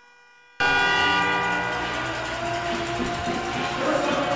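Arena horn sounding a loud, steady chord of several tones that slowly fades, cutting in abruptly after half a second of near silence.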